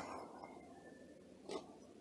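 Near quiet room tone, with one faint short tap about one and a half seconds in.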